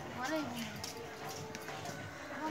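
Indistinct voices of people talking nearby, with a voice held on one note in the middle, over short scattered crackles from hot frying oil in an iron wok.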